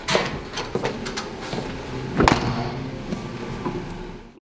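A few knocks and thuds from someone moving about a small room, the loudest about two seconds in, with light clicks between.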